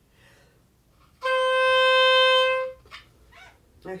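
Oboe playing a single held C, the C above middle C, as the plain reference pitch of a non-transposing instrument. The note starts about a second in, holds steady for about a second and a half, and stops.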